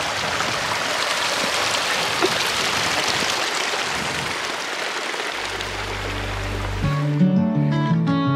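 Steady rush of a mountain stream running over rocks. Near the end background music comes in, opening with a low held bass note and then a melody of separate notes.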